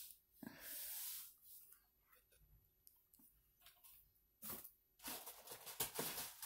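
Faint handling noises: soft rustles and clicks, with a louder rustle about four and a half seconds in.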